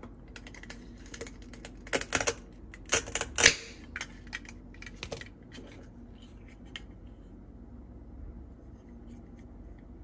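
A plastic toy knife cutting a velcro-joined toy strawberry apart. There are sharp plastic clicks and taps, the loudest a brief velcro rip about three and a half seconds in, then a few lighter taps before it falls quiet.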